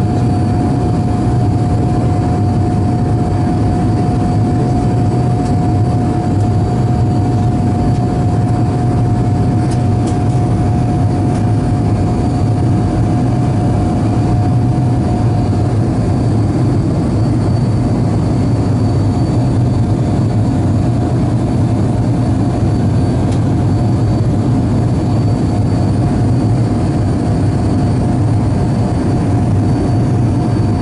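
Cabin sound of a BAe 146-family 'Jumbolino' climbing after takeoff: the steady, loud roar of its turbofan engines heard through the fuselage, with a deep drone underneath. A steady whine over the roar fades out about halfway through.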